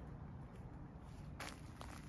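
Footsteps on wood-chip mulch, quiet, with one sharper step about one and a half seconds in, over a low steady rumble.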